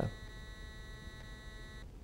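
A faint, steady electronic whine made of several even tones, the highest and strongest high-pitched, that cuts off abruptly near the end.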